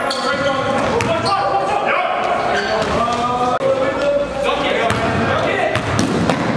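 A basketball bouncing on a hardwood gym floor during a game, mixed with players' voices in a large gym hall.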